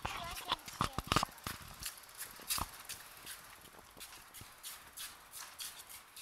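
Irregular light clicks and knocks, a few per second, loudest in the first two seconds and fading away toward the end.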